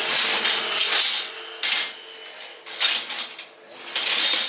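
Flat steel knife blanks scraping and clinking against each other as they are sorted by hand in a stack, in several short bursts.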